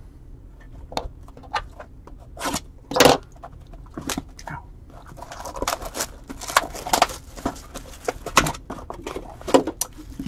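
Cardboard trading-card box being handled and its clear plastic shrink-wrap peeled off. Scattered clicks and taps, one sharper knock about three seconds in, then denser crinkling of the plastic wrap from about halfway.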